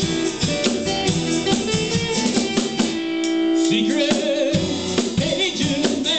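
Live rock band of two electric guitars and a drum kit playing together with a steady drum beat. About three seconds in the drums drop out briefly under a held guitar note, then come back in.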